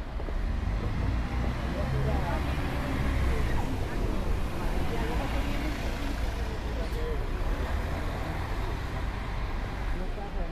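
City bus engine running as the bus pulls away close by, a steady low rumble over street traffic, loudest a few seconds in.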